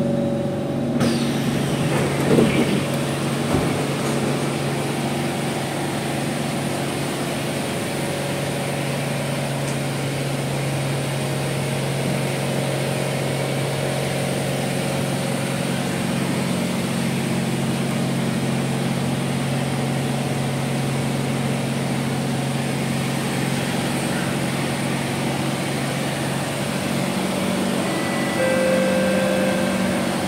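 Steady drone and hum of a stationary C151 train's air-conditioning and on-board equipment while it stands at a station with its doors open.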